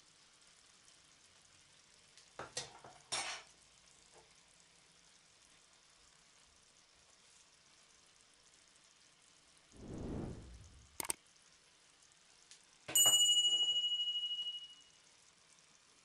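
Quiet kitchen-utensil sounds while noodles in a frying pan are seasoned: a few light clicks and rustles, then a short low shaking or grinding noise. Near the end a bright metallic ding rings out and fades over about two seconds; it is the loudest sound.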